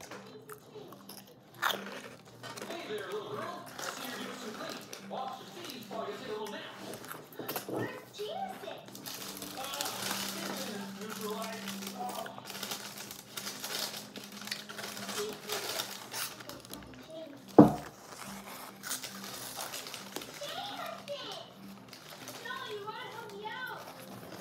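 Close-up eating sounds: a tortilla chip and a burrito being chewed, with paper wrappers crinkling and one sharp knock about three quarters of the way through. Faint voices in the background, clearer near the end.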